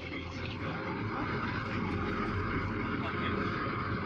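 Speedboat engines running steadily under way, with rushing wind and water noise, and passengers' voices faint underneath.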